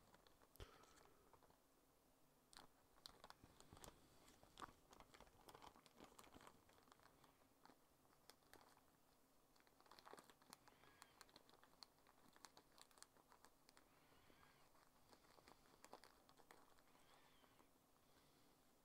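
Near silence, with faint scattered clicks, taps and rustles of small objects being handled on a work desk.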